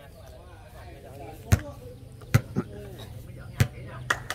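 A volleyball struck by hand during a rally: four sharp smacks in the second half, two of them in quick succession, over faint crowd chatter.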